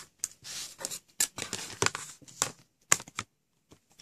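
A clear plastic Creative Grids quilting ruler being handled and slid over a cutting mat and a fabric square. There are short scrapes and rustles, and a few light ticks as it is set down, the sharpest about three seconds in.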